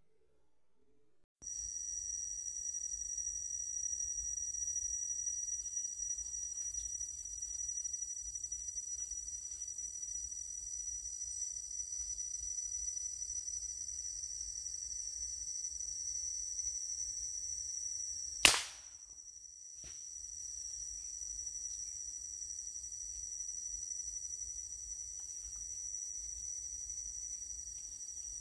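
A single sharp crack of a scoped air rifle shot about two-thirds of the way through, over a steady, high-pitched drone of forest insects.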